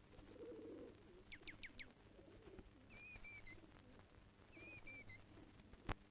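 Faint bird calls: a quick run of four falling chirps, then a short three-note call heard twice, over a low murmur near the start. A click comes right at the end.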